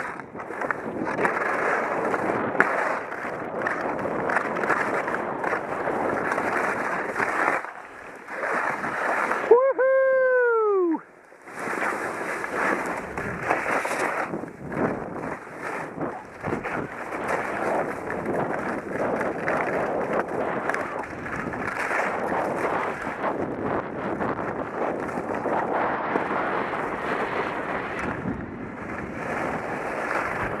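Skis sliding and scraping over snow during a descent, a continuous rough rush mixed with wind noise on the camera microphone. About ten seconds in, a short pitched call rises and falls, then the rush drops away briefly before picking up again.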